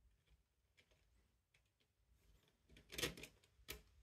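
Light plastic clicks and taps as 3D-printed plastic timing gears are dropped onto their shafts in a plastic housing, with a short cluster of sharper clicks about three seconds in. The rest is near silence.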